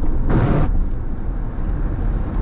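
Steady road and engine rumble inside a car cabin on a wet freeway, with one short swish of the windshield wiper sweeping the rain-speckled glass about half a second in.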